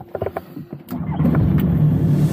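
Calidus gyrocopter's engine being started: irregular knocks as the starter cranks it for about a second, then it catches and runs steadily, louder.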